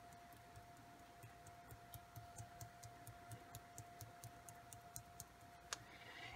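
Faint ticks of a fingertip tapping the bottom of a small plastic Ken Oliver Color Burst powder bottle to sprinkle pigment, about four taps a second, over a faint steady hum.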